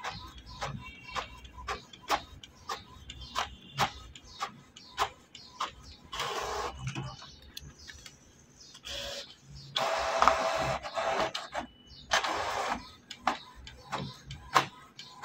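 Canon Pixma TS5340 inkjet printer running an automatic two-sided print job: a regular ticking about twice a second, then three longer bursts of paper-feed noise in the second half as the sheet is drawn back in to print its other side.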